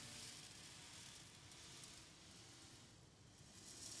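Ocean drum being slowly tilted, the beads inside rolling across the drumhead in a soft hiss like surf on a shore, easing a little and then swelling again near the end.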